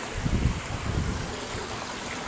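Wind buffeting the camcorder microphone: uneven low rumbling, heaviest in the first second, over a steady hiss.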